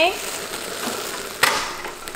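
The lid of a glass cooking pot being lifted off, with a steady hiss and then one sharp clink of the lid about a second and a half in.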